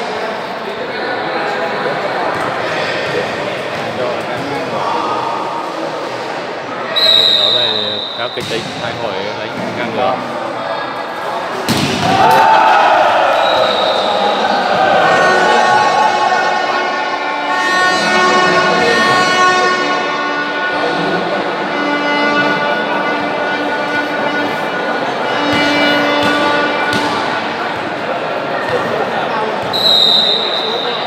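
Volleyball match in a large hall: steady crowd voices and talk, short referee whistle blasts about 7 seconds in and again near the end, and a hard ball strike about 12 seconds in, after which the crowd gets louder.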